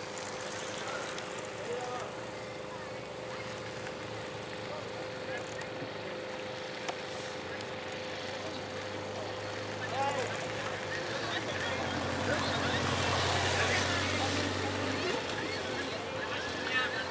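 Outdoor roadside ambience with indistinct voices of spectators. A motor vehicle's engine hum builds over the second half, is loudest a couple of seconds before the end and then cuts off sharply.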